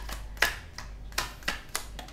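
A stack of small white paper cards being flicked through by hand, the card edges snapping in about five sharp, irregular clicks.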